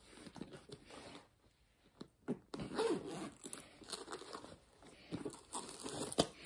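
Rummaging in a fabric gear bag and handling its pouches: irregular rustling and scraping, with a couple of sharp clicks about two seconds in.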